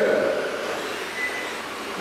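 Several electric radio-controlled touring cars running on an indoor carpet track: a steady whirring of motors and tyres that grows gradually quieter, with a faint brief whine.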